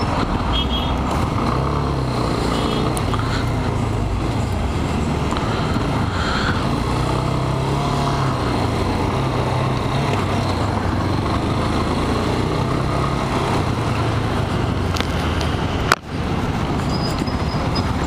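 Motorcycle engine running under way through city traffic, its note rising and falling with the throttle over a steady rushing road noise. The sound cuts out briefly about two seconds before the end.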